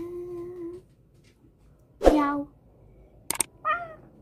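A young girl's voice imitating a cat: a short held hum, then a louder meow falling in pitch about two seconds in, and a brief vocal sound near the end. A sharp double click comes just before that last sound.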